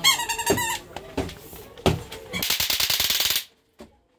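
A short, shrill, wavering cry, a few sharp knocks, then about a second of loud, rapid rattling like machine-gun fire that cuts off abruptly.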